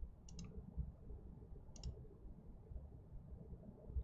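Two faint clicks of a computer mouse button, each a quick double tick, about a third of a second in and again near two seconds in, over a low room hum.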